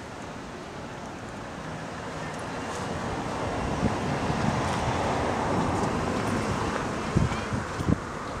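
A car passing by, its noise swelling over a few seconds and fading again, with a couple of thumps near the end.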